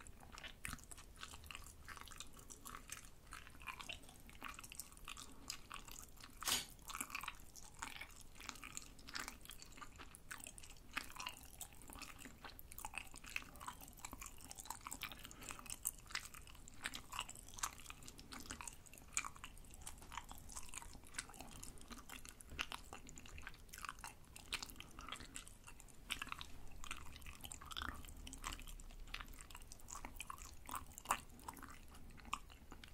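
Close-miked chewing of fried tteok (deep-fried Korean rice cakes): a steady run of small crunching clicks, with one louder crunch about six and a half seconds in.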